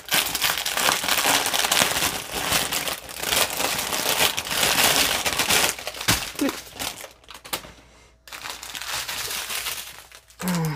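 Small plastic bags of diamond painting drills crinkling as they are handled and pulled out in a bundle, with a short lull about three-quarters of the way through.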